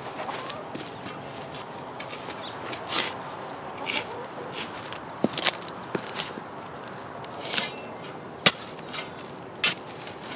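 Garden spade digging a trench in soil: irregular scrapes as the blade is driven in and lifted, with sharp knocks and clinks about once a second, the sharpest near the end, as soil is shovelled out into a bucket.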